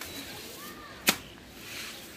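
Wet grass broom slapped against the floor and wall to daub on paint: one sharp slap about a second in, then a soft swish of the broom.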